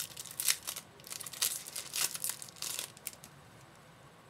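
Trading-card pack and cards being handled: a quick run of crinkling, papery rustles from the wrapper and cards that stops about three seconds in.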